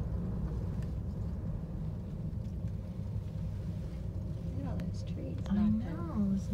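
Steady low rumble inside a moving gondola cabin, with a voice murmuring near the end.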